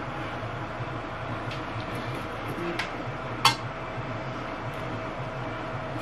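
Steady low hum with a faint hiss, like a small fan running, with a few faint clicks and one sharp click about three and a half seconds in.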